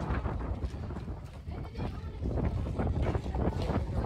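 Wind buffeting the microphone with a steady low rumble, under faint voices and a few scattered light knocks.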